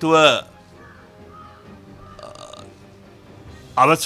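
A man's voice in short spoken phrases: a brief trailing-off phrase at the start, a pause of about three seconds, then speech resumes near the end. Faint steady background music sits underneath.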